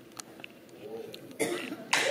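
Quiet concert-hall audience: faint murmuring voices and a cough about one and a half seconds in, with applause breaking out at the very end.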